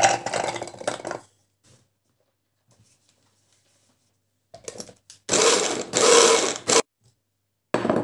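Peeled garlic cloves clattering into a hand blender's plastic chopper bowl, then the blender's chopper run in two short loud bursts, mincing the garlic.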